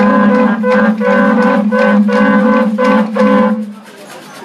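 Several large animal horns blown together as horn trumpets, sounding a rhythmic run of short notes, about three to four a second, on a low and a higher pitch together. The blowing breaks off shortly before the end.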